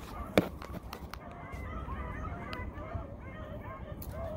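A pack of hunting hounds baying on a rabbit's trail, many overlapping calls running on. There is a single sharp click about half a second in.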